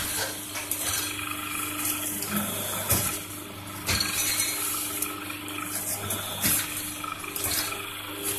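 Paper plate making press running: a steady electric hum with several sharp metal knocks and clanks as the dies close and open.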